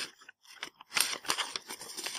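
Paper instruction sheets being handled and flipped: a quick run of crisp rustles that starts about a second in, after a quiet first second.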